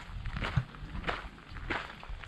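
Footsteps on a gravel path at a steady walking pace, three or four steps about half a second apart.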